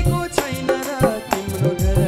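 Nepali devotional bhajan: a man singing over harmonium, with a hand-played barrel drum giving low bass strokes that bend down in pitch, about twice a second.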